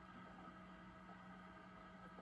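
Near silence: faint steady hum of room tone.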